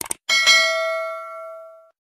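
A bell ding sound effect: two quick clicks, then a bright bell tone struck twice in quick succession that rings for about a second and a half and cuts off abruptly.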